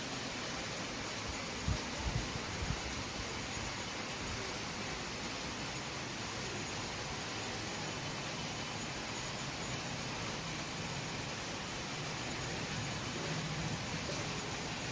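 Steady rainfall, an even hiss with no changes in it, with a few short low bumps about two seconds in.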